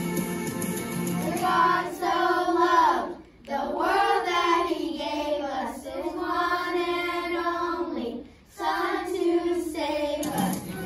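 A class of elementary schoolchildren singing a song together, in sung phrases with two short breaks, about three seconds in and again about eight seconds in.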